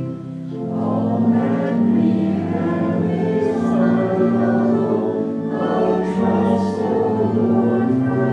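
A congregation singing a hymn with organ accompaniment, in sustained phrases with a short break between lines near the start.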